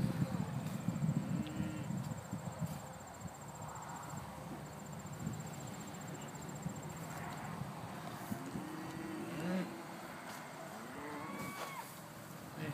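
Cattle, Scottish Highland among them, mooing in a few short low calls, mostly in the second half. There is a brief low rumble at the start.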